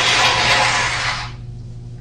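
A person blowing their nose hard into a paper tissue, one long blow lasting about a second and a half, over a steady low electrical hum.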